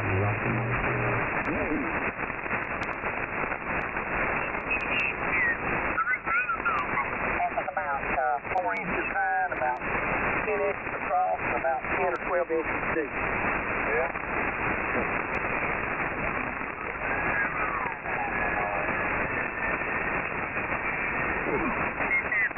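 Shortwave receiver audio in upper-sideband mode: steady band hiss with ham operators' single-sideband voices, mostly unclear and shifted in pitch, and a few sliding whistles as the Heathkit HR-10's dial is tuned across the band. The signal is demodulated by SDR# software through a 2.7 kHz filter, so nothing is heard above about 2.8 kHz.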